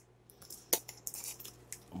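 Faint clicks and light taps of a glass spice jar and metal measuring spoons being moved and set down on a wooden cutting board, with one sharper click about three-quarters of a second in, over a faint low hum.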